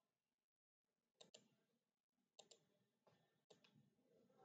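Faint computer mouse clicks in three quick pairs, about a second apart.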